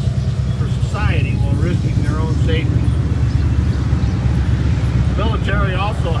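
A low, steady rumble of a motor vehicle's engine running close by, getting a little louder about a second in, under a man's voice speaking into a microphone.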